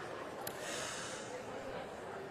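A sharp click from a handheld microphone about half a second in, followed by a short breathy snort into the mic, over faint room murmur.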